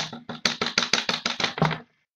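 Computer keyboard being struck hard: one sharp hit, then a rapid run of about a dozen key hits, roughly ten a second, ending shortly before the end. It is the F5 key being hammered to reload a page that won't load.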